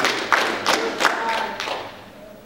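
A few scattered hand claps from a congregation, about three a second, with a few voices under them, dying away toward the end.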